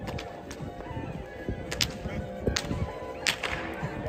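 A large cloth flag snapping with sharp cracks, about six at irregular intervals, as it is swung back and forth on a pole. Steady background music plays underneath.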